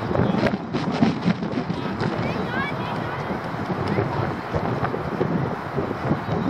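Indistinct shouts and chatter of young footballers, over wind noise on the microphone.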